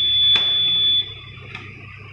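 Electronic voting machine giving a long, steady, high-pitched beep that stops about a second in, with a single click from a button press shortly before it ends.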